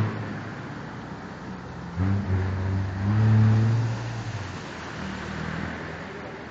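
Steady road and wind noise of a moving vehicle, with a low engine hum that comes in about two seconds in, swells briefly and fades out a little past four seconds.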